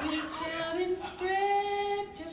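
A woman singing into a microphone: a short sung phrase ending on a long held note that rises slightly in pitch.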